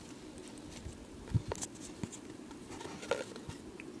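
Faint handling noise, paper rustling with a few soft taps, as a paper dart is fitted into a plain tube shooter.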